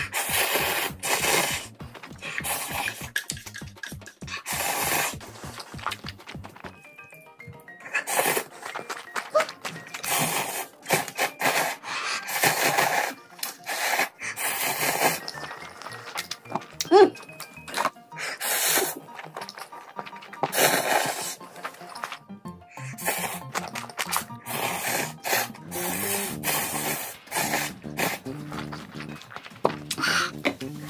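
Slurping and chewing of instant ramen noodles in a string of short, loud bursts, over background music.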